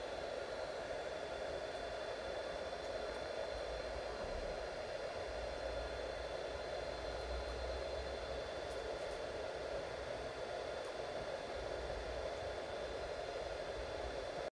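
Steady low-level background noise: an even hiss with a faint steady hum and high tones, unchanging throughout.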